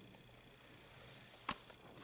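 Near silence: faint room tone, broken by a single sharp click about one and a half seconds in.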